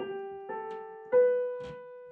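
Roland FP-30 digital piano in a piano voice, three single notes played slowly one after another, each a step higher and left to ring, the third the loudest: a slow scale run being worked out finger by finger.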